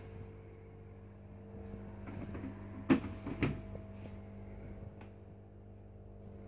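Steady low electrical hum from aquarium equipment, with two light knocks about three seconds in.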